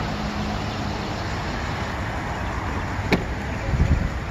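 A pickup door latch clicks open about three seconds in, followed by low thumps near the end as the door swings open, over steady outdoor background noise.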